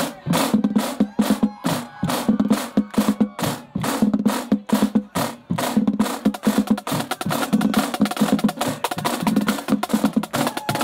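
Marching snare drums played in a fast drum-line cadence: crisp, rapid stick strokes that thicken into a denser, rolling passage about halfway through.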